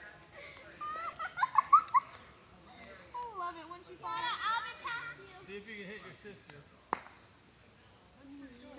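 Children's voices laughing and squealing in short bursts, with no clear words, and one sharp click shortly before the end.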